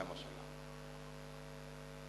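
Steady electrical mains hum from the microphone and sound system, a few unchanging low tones.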